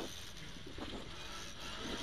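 Ford Escort RS2000 rally car heard from inside the cabin, its engine running at a fairly steady level with tyre and road noise from the loose stage surface.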